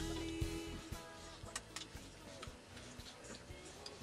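Background song fading down: a held note dies away in the first second, leaving quieter music with scattered faint clicks.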